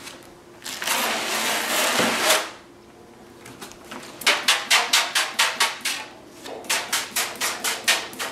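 Hand trigger spray bottle squirting in two quick runs, about four squirts a second, misting liquid onto the plastic-film covering of a model airplane wing. Before that, about a second in, there is a longer rustling hiss of a vinyl graphic being peeled off its backing.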